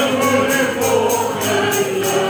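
A choir singing a gospel song, with a steady high percussion beat about three times a second.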